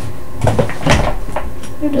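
A few short knocks and rustles about half a second to a second and a half in, from a hand moving and bumping close to the microphone.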